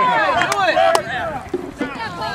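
Several voices of rugby players and sideline spectators shouting over one another, with two sharp knocks about half a second and one second in.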